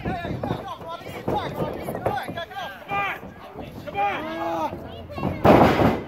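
Heavy crash of wrestlers' bodies landing on the ring mat about five and a half seconds in, the loudest sound, over people shouting.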